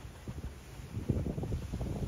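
Wind buffeting the microphone in low, uneven gusts.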